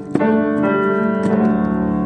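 A digital keyboard playing a piano sound: a chord is struck just after the start and held ringing.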